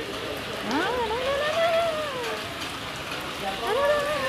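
A woman's drawn-out wordless voice, rising and falling in pitch: one long sound starting about a second in and another near the end. Behind it runs a steady hiss of rain and water.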